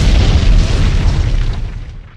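Explosion sound effect: a deep, rumbling boom dying away over about two seconds.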